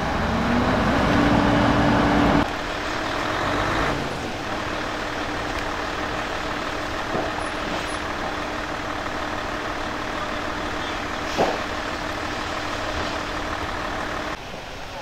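A heavy vehicle engine runs at high revs, its hum rising in pitch over the first two seconds. It then drops back abruptly and holds a steady hum. A single sharp knock comes about eleven seconds in.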